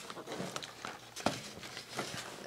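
Quiet handling of cardboard cookie packaging on a table: a few light taps and knocks, the clearest a little past the middle.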